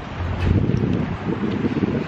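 Wind buffeting the microphone: a rough, low rumble.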